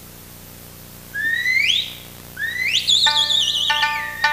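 Traditional Okinawan dance music: after about a second of quiet, a high flute slides upward twice, the second slide held with a wavering vibrato. Plucked string notes come in near the end.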